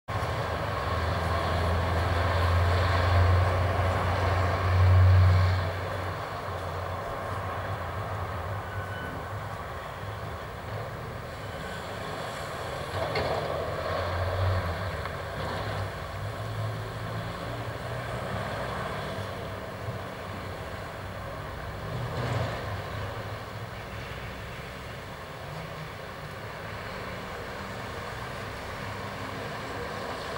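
Street traffic: vehicle engines rumbling past, the loudest pass about five seconds in, with smaller passes later.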